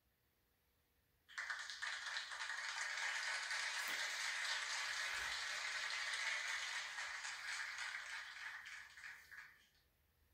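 Applause: many hands clapping, starting suddenly about a second in, holding steady and fading away near the end.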